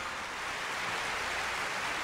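Audience applauding, a steady even clatter of many hands.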